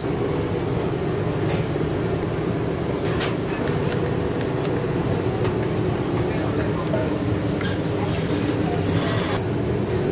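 Steady mechanical hum of diner kitchen machinery, with a few light knocks of utensils at the counter.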